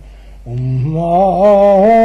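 Male voice chanting a Buddhist dedication verse in slow, long-held notes. There is a brief breath pause at the start, then a held note that steps up in pitch about a second in.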